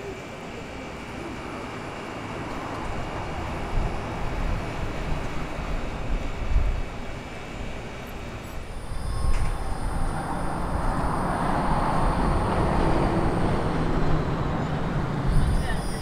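Outdoor ambience picked up while walking, with wind rumbling on the microphone and faint voices. A steady high-pitched whine joins in about halfway through.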